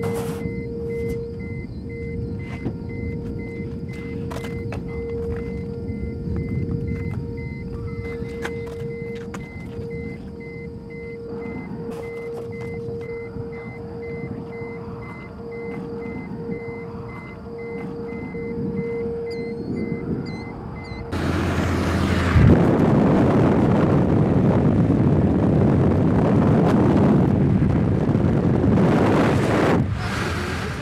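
Low rumble of a stationary car with a steady, slightly pulsing electronic tone over it. About 21 seconds in, it switches to loud rushing wind and road noise through the open car window as the car drives at speed.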